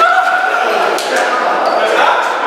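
Several men's raised voices in a group scramble, with one drawn-out shout in the first second, over thumps and quick footfalls on a hard floor in a large, echoing room.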